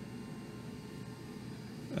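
Quiet, steady room tone: an even low hiss with a few faint steady whines, the background noise of running equipment.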